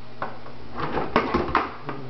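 Plastic food-storage lids clattering and scraping against each other and the edge of a kitchen drawer, a handful of short knocks.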